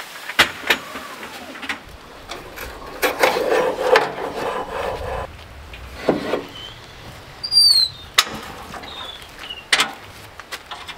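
Knocks and clunks of gear being handled on the back of a pickup truck, with a drawn-out scraping squeal in the middle.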